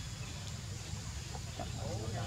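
Steady low background rumble, with a few short clucking or chirping calls starting about one and a half seconds in.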